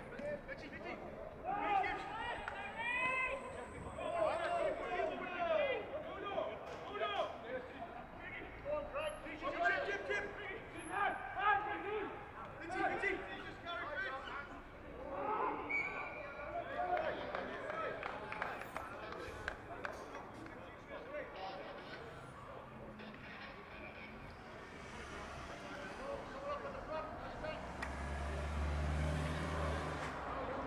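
Indistinct voices at a rugby match, people calling out and talking, heavy through the first half and thinning out later. A low rumble builds near the end.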